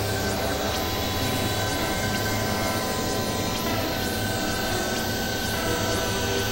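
Experimental electronic drone: several sustained tones held over a steady, dense rumbling noise bed, with no beat.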